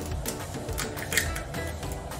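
Background music with a steady beat, with a few short clicks over it as eggs are cracked into a small frying pan.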